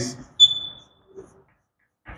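Chalk squeaking on a blackboard while letters are written: one short, high-pitched squeal about half a second in that fades within half a second.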